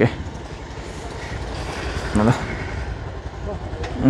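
Steady low rumble of street traffic, with a short spoken word about two seconds in.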